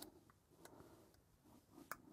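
Near silence, with two faint small clicks from a hair clipper's blade and tension spring being handled as they are fitted onto the clipper head.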